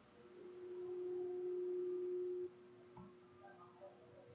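A steady single-pitched tone swells in, holds for about two seconds and stops abruptly, followed by a faint click.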